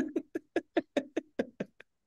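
A person laughing in a quick run of about nine short "ha" bursts that grow fainter.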